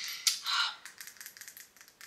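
A run of small, light clicks and taps from handling a serum bottle with a pump and a shiny lid, the sharpest click about a quarter second in.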